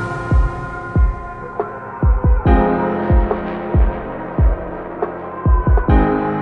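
Electronic background music: a low kick-drum beat about twice a second under sustained synth tones, brightening about two and a half seconds in.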